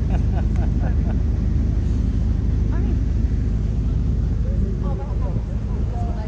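Steady low rumble of a river paddle boat's engine running underway, with wind buffeting the microphone.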